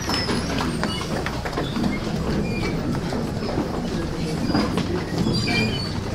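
Steady low hum and rumbling room noise in a hall, with scattered small knocks and a few faint, brief squeaks.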